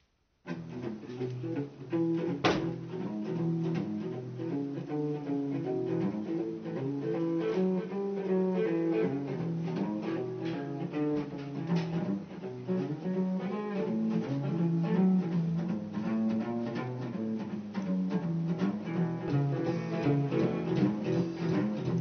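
Guitar playing a boogie with a stepping bass-note pattern, starting about half a second in and keeping up a steady rhythm.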